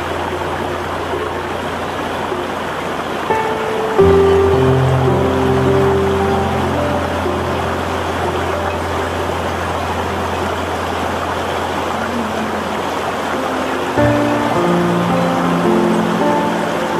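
Slow meditation music of long held notes over a low sustained bass, laid over the steady rush of water flowing over rocks in a shallow stream. New chords come in about four seconds in and again near the end.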